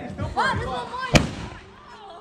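A single sharp firework bang just over a second in.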